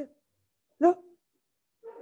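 Speech only: a voice saying one short word, 'no' (Hebrew 'lo'), a little under a second in, with silence around it.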